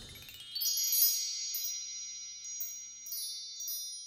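High, tinkling chimes: a quick upward run of notes, then several more strikes that ring on over one another, the loudest about a second in.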